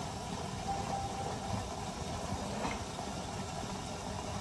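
Covered pot of mutton curry simmering on a gas stove: a steady low rumble.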